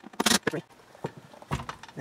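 Hand-tool and handling noises under a car's dashboard and glove box: a short rustling scrape with a brief grunt near the start, then a single knock about one and a half seconds in.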